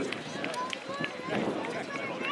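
Distant shouts and calls of soccer players on the pitch during play, broken by a few short knocks.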